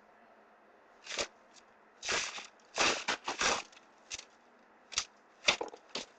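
Short bursts of rustling and crinkling as paper and plastic wrapper trash is picked up off a cluttered floor, about seven in all, with the loudest near the end.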